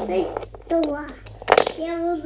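A child's voice talking, with a few light clicks as a wooden toy train wagon is picked up and handled.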